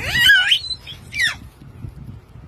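Baby squealing in high-pitched, gliding cries: a longer rising, wavering squeal at the start and a shorter falling one just over a second in.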